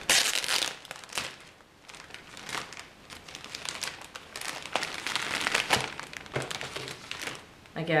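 Clear plastic bag crinkling and crackling in irregular bursts as it is opened and a bundle of hair is pulled out of it.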